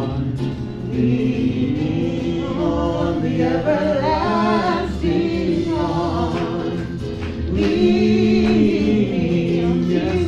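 A congregation singing a hymn together, led by a woman's voice on a microphone, the sung melody running on steadily through the verse and into the chorus.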